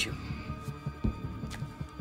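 Tense background score between lines of dialogue: a low throbbing pulse under a steady sustained drone.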